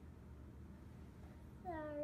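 Quiet room tone, then near the end a short pitched vocal call that dips and then rises in pitch.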